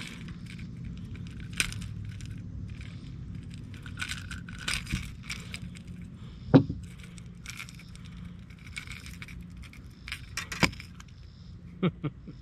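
Metal pliers clicking and clinking against a small topwater lure's treble hooks as the hooks are worked out of a bass's mouth, with one sharper knock about halfway through and a couple more clicks near the end. Underneath runs a low steady hum.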